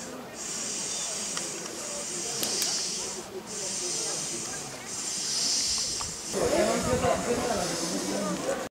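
A steady high-pitched hiss in three stretches, broken by two short gaps, over faint voices; several people talk louder near the end.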